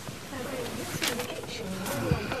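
A couple kissing: soft wordless murmuring hums with a couple of sharp smacks, one about a second in and one near the end.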